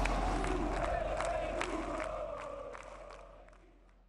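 Football stadium crowd cheering and chanting, with sharp cracks scattered through it. It starts abruptly and fades out over about four seconds.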